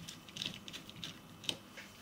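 Faint, scattered small clicks and taps of hands handling a single-board computer and its cables, the sharpest about one and a half seconds in.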